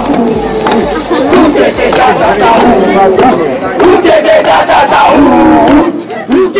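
A group of men shouting a haka chant together, loud and continuous.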